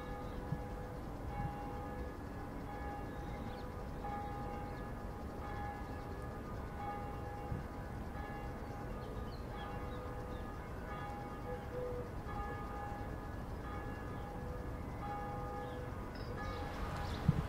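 Church bells ringing, struck again and again so that their tones keep swelling and ringing on, over a steady low background rumble.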